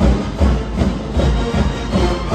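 Music with a heavy, steady beat, about two and a half beats a second.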